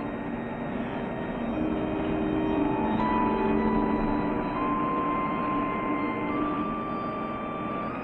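Slow dramatic music of long held notes, each moving to a new pitch every second or two, over a steady rushing noise.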